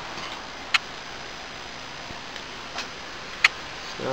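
A few isolated sharp clicks over a steady background hiss: one about a second in and two more near the end.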